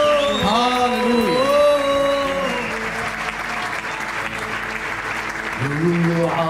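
A congregation applauding, with a man's voice over the clapping for the first couple of seconds. Worship music and singing start up again near the end.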